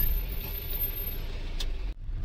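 Steady low engine and road rumble heard inside the cab of a Mahindra Bolero pickup on the move. The sound drops out briefly near the end.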